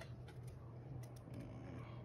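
Faint clicks and rustles of trading cards being handled, over a steady low hum.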